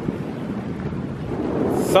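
Wind blowing across the camera microphone: a steady rush of noise that grows louder near the end.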